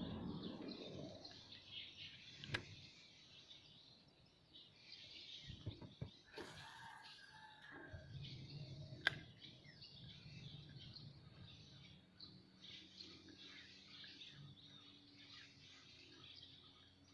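Faint, scattered bird chirps, with two sharp clicks about two and a half and nine seconds in.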